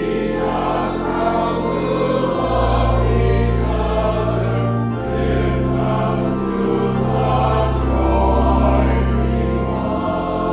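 Choir and congregation singing a hymn with organ accompaniment; the organ holds long bass notes that change every couple of seconds beneath the voices.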